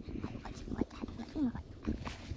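Hands scraping and digging in dry sandy soil, with many small irregular scuffs and knocks. A short wordless voice sound comes about one and a half seconds in.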